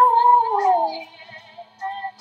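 A young woman's voice singing, holding the last word of a line on a high note that glides downward and fades out about a second in, followed by a short soft note near the end.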